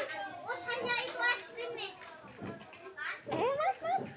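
Children's voices chattering and calling out, with indistinct talk that comes and goes, loudest near the end.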